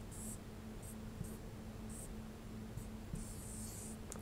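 Marker pen drawing on a whiteboard: a series of short, faint strokes, the longest near the end, as a stick figure is drawn.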